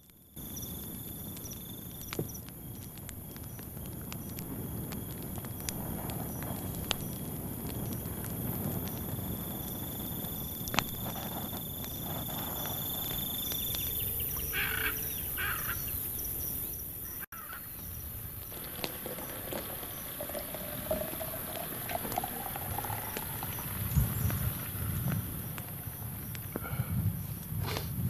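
Wetland night ambience: a steady chorus of insects and frogs, with a thin high insect trill through the first half and occasional sharp crackles from a wood campfire. Near the end come a few low calls made through cupped hands.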